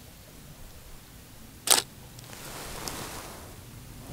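Nikon Df DSLR's shutter and mirror firing once: a single sharp shutter click for one frame.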